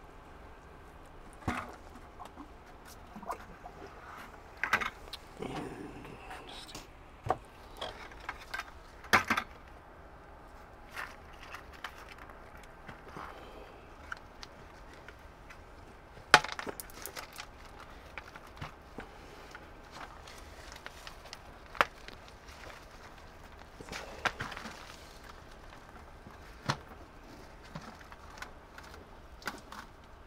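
Scattered knocks, clicks and rustles of a plastic bucket and lid being handled as a plant's roots are lowered in and the lid lifted, the sharpest knocks about nine and sixteen seconds in.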